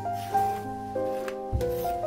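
Background instrumental music: a melody of ringing notes that change every half second or so, over a low bass line.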